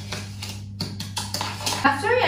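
A spoon stirring a wet mixture of sugar, oil and eggs in a mixing bowl, a quick run of short scraping strokes, over a steady low electrical hum.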